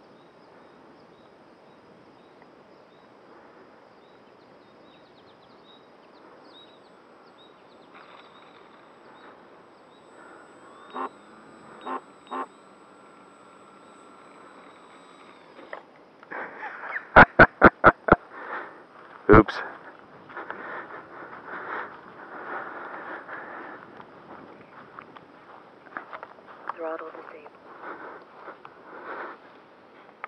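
Close handling noise from an action camera: a quick run of five or six sharp clicks, then another a moment later, followed by irregular rustling and small knocks as it is carried across grass.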